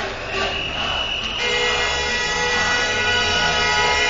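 Several vehicle horns held down together in long, steady blasts over crowd noise. One starts early and more join about a second and a half in.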